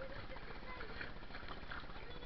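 Pool water splashing and sloshing around children playing in the water, with faint children's voices in the background.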